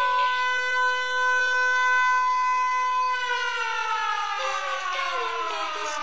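Siren-like tone within an electronic body music mix: one pitch held steady for about three seconds, then falling slowly in pitch.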